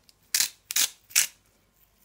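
Hand salt grinder turned in three short grinding bursts, cracking coarse sea salt.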